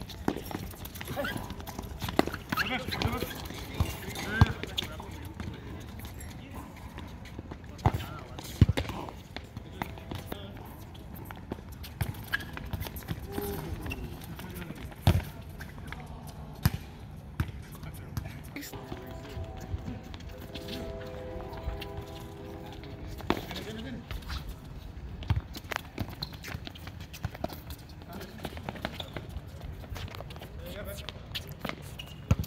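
Soccer ball kicked and bouncing on a hard tennis-court surface, a string of sharp thuds, the loudest about 8, 9 and 15 seconds in, over players' running footsteps and indistinct shouts.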